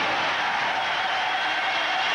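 Arena crowd cheering steadily during a heavy clean and jerk, a dense unbroken wall of voices.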